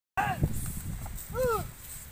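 Two short, rising-and-falling shouted calls from a person's voice, one at the very start and one about a second and a half in, over a low rumble of movement.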